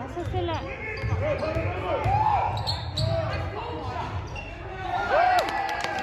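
Basketball being dribbled on a hardwood gym floor with sneakers squeaking on the court, in a large echoing gym.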